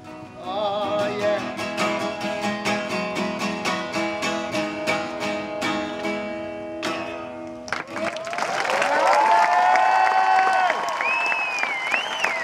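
Guitar strummed hard in fast, even chords under a man's wavering sung note, the closing bars of the song, cut off abruptly about eight seconds in. The audience then applauds and cheers, with whistles.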